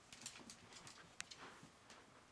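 Faint, irregular clicking of a wire fox terrier's claws on a tile floor as she walks, with one sharper tick about a second in.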